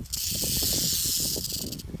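Western diamondback rattlesnake buzzing its rattle as a warning while held behind the head, a dry high-pitched buzz lasting nearly two seconds that cuts off suddenly. Dry grass rustles underneath as it is handled.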